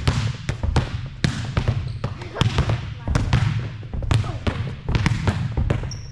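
Several volleyballs slapped with the open palm in a wrist-snap drill, smacking off a wall and bouncing on a hard court floor: a stream of overlapping, irregular slaps and thuds, a few a second.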